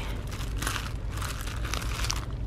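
Plastic packaging of a pack of cellophane treat bags crinkling irregularly as it is handled, over a low steady hum.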